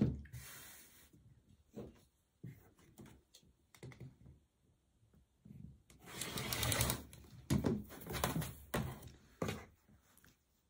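Rotary cutter drawn along an acrylic quilting ruler, slicing through pieced cotton strips on a cutting mat in one noisy stroke of about a second, about six seconds in. Around it come sharp clicks and knocks of the ruler and cutter being set down and handled on the mat.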